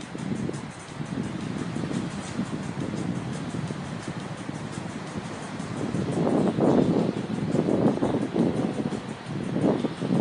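Wind buffeting the microphone outdoors, a gusty rumble that grows stronger in the second half.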